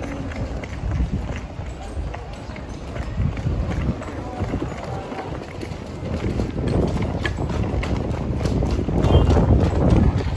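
Footsteps and a metal airport luggage trolley rattling along concrete pavement, with many small knocks and clatters and people's voices around. The rattle gets louder about nine seconds in.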